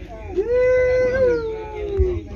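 A long, high, held vocal cry from one voice that sags down in pitch at the end, typical of the sapucai shout that caps a chamamé song.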